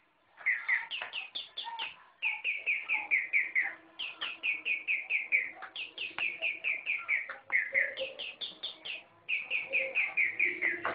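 Rapid bird-like chirping, high and each chirp falling in pitch, about five or six chirps a second in runs broken by short pauses, starting about half a second in.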